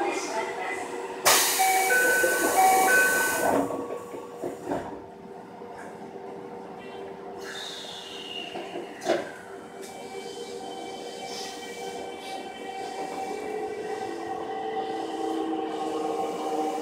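Toei 5300 series subway car's doors closing: a loud burst of noise with a repeating two-note chime, then the doors shutting. A clunk about nine seconds in is followed by a whine that slowly rises in pitch as the train pulls away.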